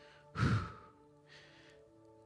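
A man breathes out heavily into a close handheld microphone, once strongly about half a second in and then more softly about a second later, over soft sustained background music.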